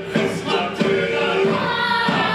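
Voices singing together over music with a regular beat. About halfway through, a long held high note comes in over the voices.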